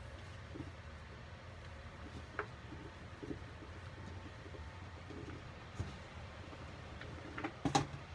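Gloved hands crumbling a damp, not fully dried green chalk block into a bucket of crushed chalk: faint, scattered soft crunches, with a louder cluster of crunches near the end, over a steady low hum.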